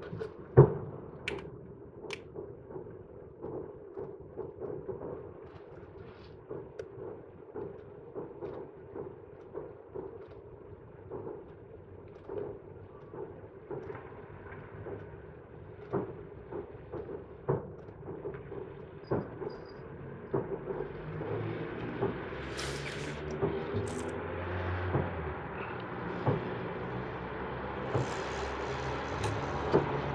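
Distant festival fireworks bursting: a long, irregular series of booms, the loudest about half a second in. From about twenty seconds in, a steady low noise grows louder underneath.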